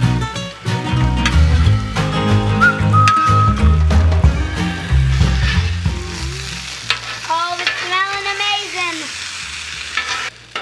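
Vegetables sizzling on a hot flat-top griddle while metal spatulas scrape and toss them, under background music with a strong bass line.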